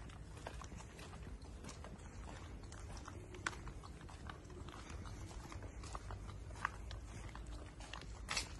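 Footsteps on a cobblestone street: irregular clicks and scuffs of shoes on stone, two of them sharper, about three and a half and six and a half seconds in, over a steady low rumble.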